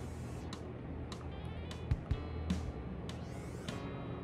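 Quiet background music with guitar, with a few soft clicks.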